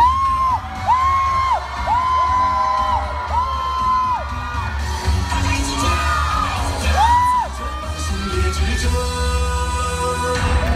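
Loud stage-show music with a heavy steady beat and a run of high held notes or whoops, each sliding up at the start and dropping away at the end: four in the first four seconds and one more about seven seconds in.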